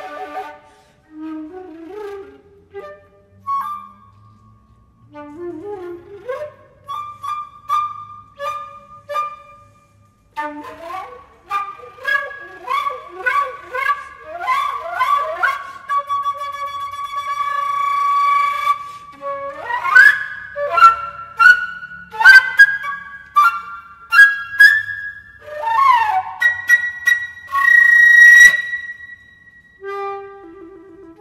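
Concert flute playing a contemporary piece: short detached notes with sharp attacks and quick upward slides, quiet at first and then louder. A sustained tone follows, ending on a long high held note near the end.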